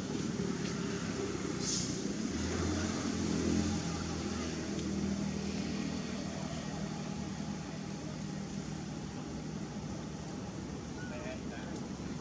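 A steady low motor hum, like a vehicle engine running, strongest from about two to seven seconds in, over outdoor background noise with voices.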